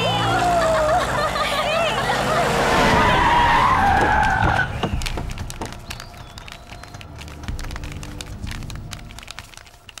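Vehicles braking hard with tyres squealing, shouting mixed in, for the first four to five seconds. The rest is quieter, with scattered knocks and clicks.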